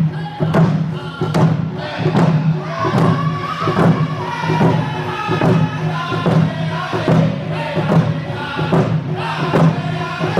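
Group of men singing a round dance song in unison while beating hand drums together, a steady drumbeat under the voices.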